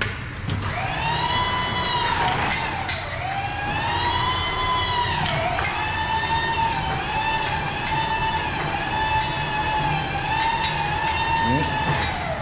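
A power tool's electric motor, a screw gun or drill, running at high speed with a steady whine. Its pitch sags briefly every second or two as it takes load.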